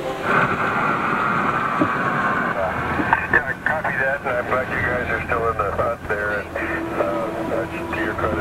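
Indistinct voices, no words made out, after a falling tone over the first two seconds.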